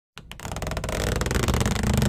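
Animated intro sound effect: a noisy whoosh that starts abruptly and swells steadily louder, like a rising sweep.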